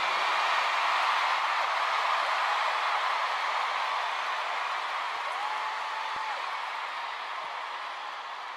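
Stadium crowd cheering and screaming, slowly dying down, with one voice's held high cry rising above it about five seconds in.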